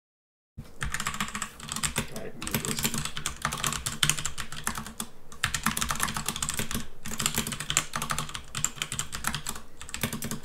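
Fast typing on a computer keyboard, rapid key clicks in bursts with short pauses, starting about half a second in, over a low steady hum.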